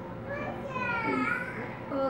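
A child's voice, one drawn-out call with its pitch rising and then falling, over a faint steady hum.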